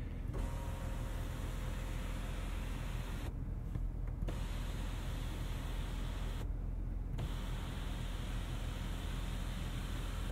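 Electric motor of a car's panoramic sunroof shade running as it slides open: a steady whirr with a faint whine in it, briefly dipping twice, over a low steady hum inside the cabin.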